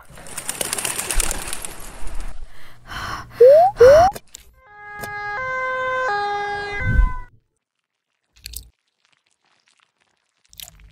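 Cartoon sound effects: a noisy rush for the first two seconds, then two quick, loud rising whoops. A two-tone ambulance siren follows, alternating between a high and a low note for about three seconds, and stops about seven seconds in.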